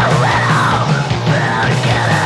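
Hardcore punk song with screamed death-voice vocals over loud, dense band backing with steady drum hits.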